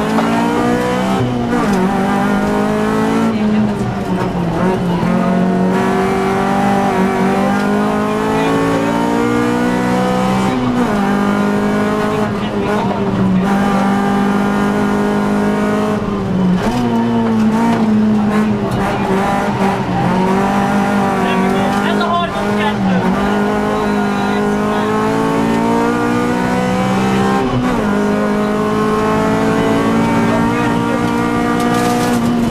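Rally car engine heard from inside the cabin at full stage pace. The engine note climbs in pitch for a few seconds, then drops sharply, about six times over the stretch.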